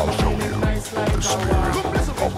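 1990s pop-dance track playing in a DJ's vinyl mix, with a steady electronic kick drum about twice a second under synth melody.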